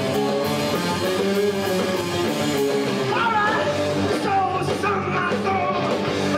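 Live rock band playing loudly on electric guitars and drums, with a voice starting to sing over it about halfway through.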